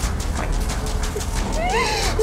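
A woman crying and whimpering in fear, with a rising, then falling wail near the end, over background music.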